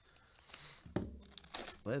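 Crinkling of a Panini Prizm trading card pack's wrapper as gloved hands tear it open and pull the cards out. It comes in short, scattered crackles starting about half a second in.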